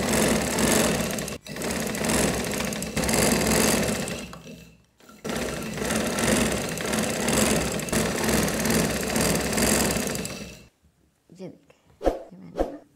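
Domestic sewing machine running at speed, stitching a seam through cotton frock fabric. It pauses briefly about a second and a half in, stops for a moment around four and a half seconds, then runs again until it cuts off near the end.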